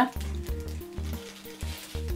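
Rolled oats pouring from a small plastic bag onto mashed banana on a plate: a faint, rustling patter with the crinkle of the bag, over soft background music.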